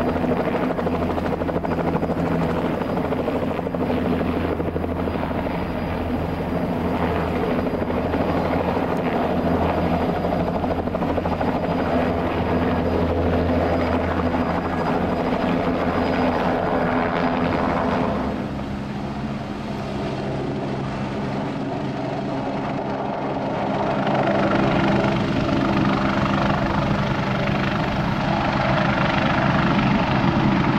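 Bell 206 JetRanger helicopter, its Allison 250 turboshaft and rotor running as it lifts off into a low hover. A bit past halfway the sound drops and changes. It then builds louder again toward the end as another helicopter flies.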